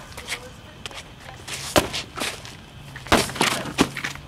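Several sharp knocks and thuds at irregular intervals, the loudest about two and three seconds in.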